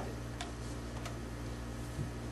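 Room tone with a steady low hum and two faint clicks, about half a second and a second in.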